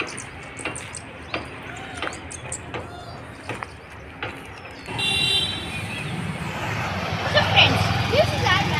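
Footsteps walking on a dirt road, then from about five seconds in, road traffic with a steady low rumble, and a vehicle horn sounds briefly as it starts.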